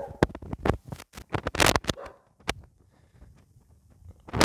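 A quick, irregular run of clicks and knocks over the first two seconds or so, then much quieter.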